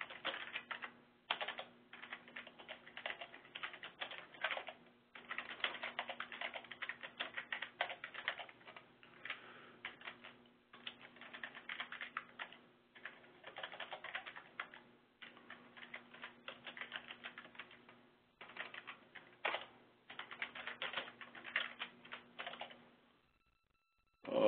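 Computer keyboard typing: quick runs of keystrokes in bursts separated by brief pauses, stopping about a second before the end.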